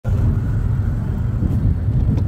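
Steady low rumble of a road vehicle in motion.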